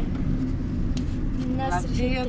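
Car driving, heard from inside the cabin: a steady low rumble of engine and road noise, with a single click about a second in.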